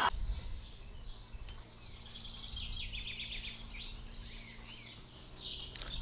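Songbirds chirping and singing faintly in short repeated phrases over a quiet, steady outdoor background.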